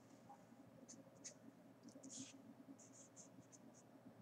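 Faint scratching of a felt-tip marker writing on paper, a series of short strokes.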